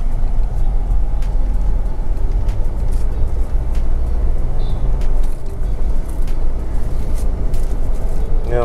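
Steady engine and road rumble of a Renault Triber, heard from inside the cabin while driving.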